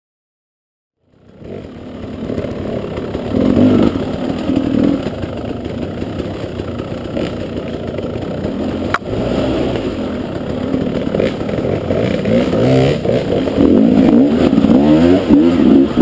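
KTM 300 EXC two-stroke enduro motorcycle engine starting about a second in, then running and revving up and down over and over as it climbs a rocky trail, heard close to the rider, with clattering knocks and a sharp click about nine seconds in.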